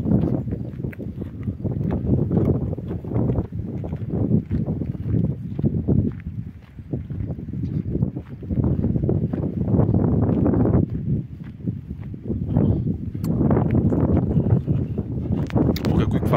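Uneven low rumble of wind and handling noise on a hand-held phone microphone, with footsteps on a dirt road and a few sharp clicks near the end.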